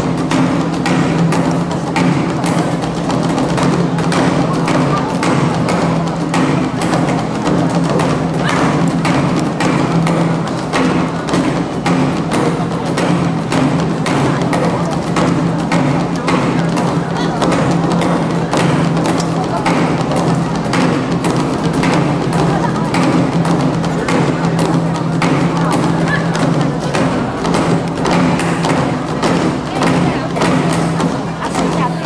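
Nanta ensemble drumming: sticks beating large Korean barrel drums and rows of drums in quick, continuous strokes, with a steady low tone running underneath.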